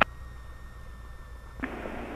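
Aircraft radio and intercom audio between transmissions. A click as the pilot's transmission ends, a low steady hum, then about one and a half seconds in a click and a hiss as the receiver picks up the ground controller's carrier before the reply.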